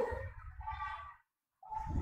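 A pause in a man's lecture over a microphone: faint voice sounds trail off in the first second, a brief moment of dead silence, then his voice starts again near the end.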